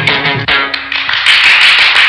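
The song's final instrumental notes die away in the first second, then an audience breaks into loud applause about halfway through.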